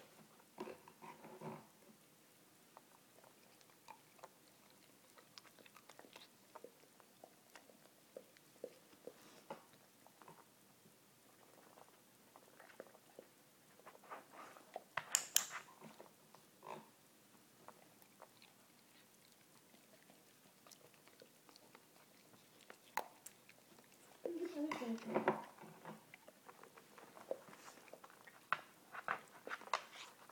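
A handheld training clicker clicks once about halfway through, marking the dog's paw landing on the book. Around it are quiet scattered taps of the dog moving on a hardwood floor, and a brief voice-like sound near the end.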